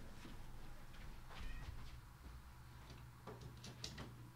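A cat choking, heard faintly, with a few light clicks near the end.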